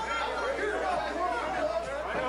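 Several people's voices overlapping, talking and calling out at once: cageside spectators' chatter.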